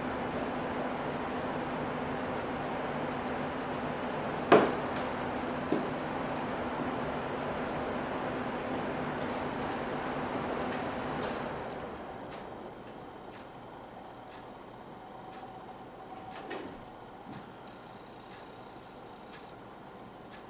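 Room tone with no piano played: a steady hum and hiss from a running machine winds down and stops about twelve seconds in. A sharp knock comes about four and a half seconds in, a fainter click a second later, and a soft thump a few seconds before the end.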